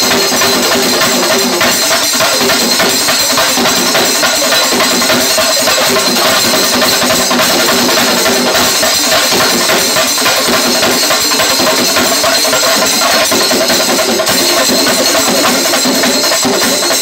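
Shingari melam troupe: many chenda drums beaten with sticks together in dense, unbroken, loud drumming.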